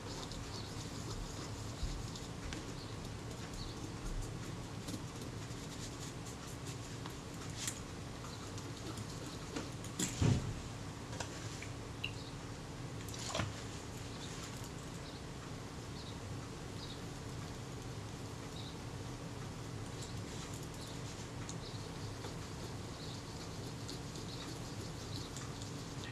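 Faint scratching of a solvent-soaked cotton bud wiping oil off the small metal diaphragm blades of a camera shutter, over a steady low hum. A few soft handling knocks break in, the loudest about ten seconds in.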